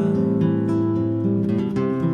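Acoustic guitar playing ringing chords over a stepping bass line, a short instrumental passage between sung lines of a solo guitar-and-voice song.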